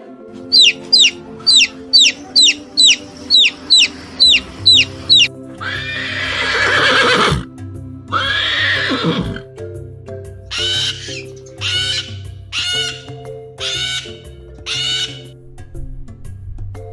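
Horse whinnying twice, each a long call falling in pitch, over soft background music. Before it comes a quick run of about eleven short, high falling chirps, and after it five short high calls about a second apart.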